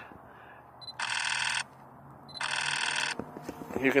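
An electronic telephone-style ring sounding twice: two trills of about two-thirds of a second each, a little under a second apart.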